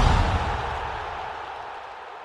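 The fading tail of a deep boom sound effect from a broadcast logo sting, dying away steadily.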